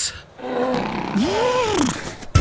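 Cartoon polar bear roaring: one long call that rises and then falls in pitch.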